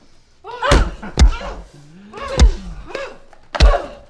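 Four heavy thuds of a crowbar striking a man's body, coming irregularly within about three seconds, each met by a short cry of pain, with a low groan between the second and third blow.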